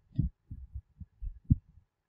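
Soft, low thumps at irregular intervals, about six in two seconds, from a stylus knocking against a pen tablet while writing on the diagram.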